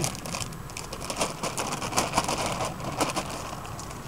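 Clear plastic foil sheet crinkling and crackling as it is peeled off the top bars of a beehive's frames, a dense run of irregular crackles.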